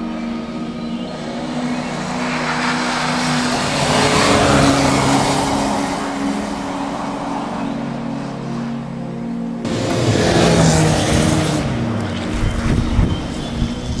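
A rally car's engine revving hard as it slides past on a snow-covered gravel road, twice, with an abrupt cut between the two passes. Steady background music plays underneath.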